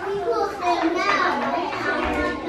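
A roomful of young preschool children chattering over one another, no single voice standing out.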